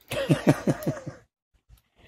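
A man's short, rueful laugh: several quick breathy bursts falling in pitch, over in about a second.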